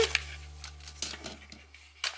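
Faint light clicks and rustles of plastic toy packaging being handled, over a low steady hum.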